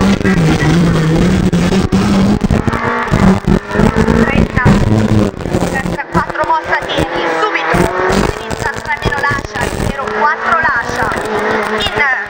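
Renault Clio Williams rally car's 2.0-litre four-cylinder engine heard from inside the cabin, driven hard, its pitch rising and falling as it goes through the gears and bends.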